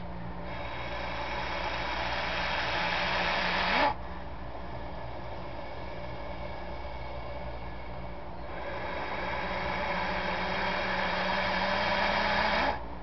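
Bull snake hissing in defence: two long hisses of three to four seconds each, the first starting just after the beginning and the second about two-thirds of the way in. Each grows louder and then cuts off sharply. The snake is agitated and warning off contact.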